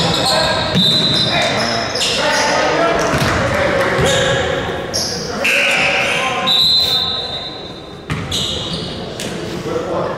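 Basketball game sounds in a gym: a ball dribbling on the hardwood court, with sneakers squeaking and players and spectators talking, all echoing in the hall.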